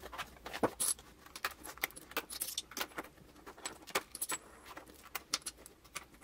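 Plastic planner cover and pages being pulled off and fitted onto the metal binding discs of a disc-bound planner: a run of small clicks, snaps and rustles.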